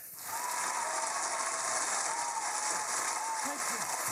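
Audience applause that sets in just after the start and keeps going steadily, with a voice coming in near the end.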